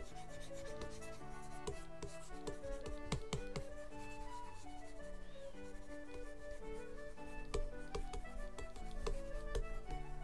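Pen stylus rubbing and scratching across a drawing tablet in many short irregular strokes, busier near the end, over background concertina music.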